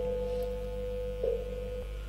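Quiet background music: a single held note, sounded again about every second and a half, over a low steady hum.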